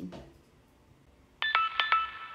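Rabbit R1 reminder alarm going off about a second and a half in: a ringtone-like chime of quick repeated notes over several held high tones.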